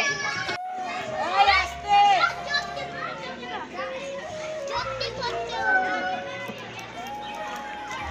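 Children playing outdoors: high-pitched child voices calling and shouting over one another. The sound drops out briefly about half a second in.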